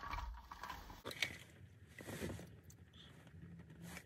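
Faint sounds of a plastic iced-coffee cup being handled and sipped through its straw, with a light knock about a second in.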